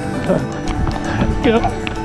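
Background music with sustained tones, over the rhythmic footfalls of running on a concrete sidewalk. A brief voice sounds about one and a half seconds in.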